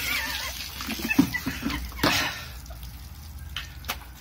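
Water splashing from a bucket, in two loud splashes about two seconds apart, with a wavering, high laughing squeal over the first one.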